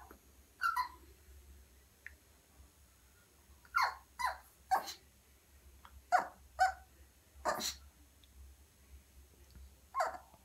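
Young Yorkshire terrier barking at her reflection in a mirror: short, high barks, one about a second in, then a run of six between about four and eight seconds.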